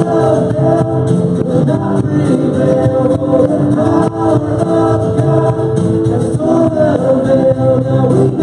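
Live church worship band playing a contemporary worship song. Male and female voices sing together over acoustic guitar, keyboard, electric guitar and drums.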